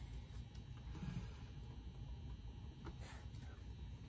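Quiet room tone with a faint steady low hum, and one light click about three seconds in.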